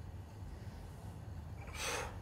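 A short, sharp breath out near the end, as the lifter presses the barbell up from his chest; before it, only faint room tone.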